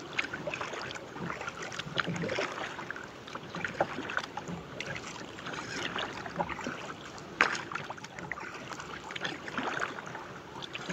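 Water lapping and splashing against a kayak's hull in a run of small irregular splashes, with a sharper splash about seven seconds in.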